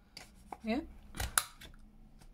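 Handheld corner rounder punch clicking as it cuts a 10 mm rounded corner off a sheet of paper: a sharp double click a little past the middle, with a lighter click just before it.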